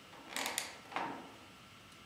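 Laser-cut wooden brace snapping into the slots of a flat-pack laptop stand under firm hand pressure: a quick cluster of wooden clicks about half a second in, then one more sharp click about a second in.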